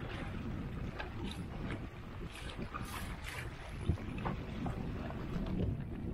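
Wind rumbling on an action-camera microphone over choppy open water, with water washing against a kayak's hull. A few short splashes stand out, near the middle and about four seconds in.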